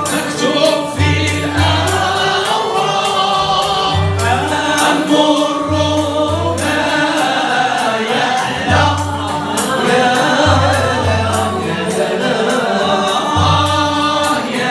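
Moroccan Andalusian (al-Ala) orchestra: a group of men singing together, accompanied by plucked oud and qanun, with low sustained bass notes recurring underneath.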